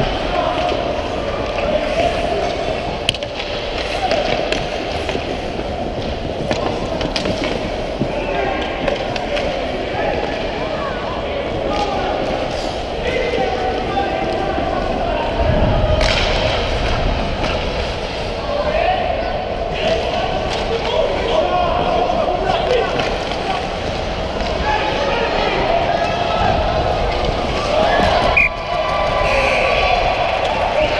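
Youth ice hockey play heard from the ice: skates scraping, and sticks and puck clacking in frequent sharp knocks. Indistinct shouting echoes in the rink, with a heavier thump about halfway through.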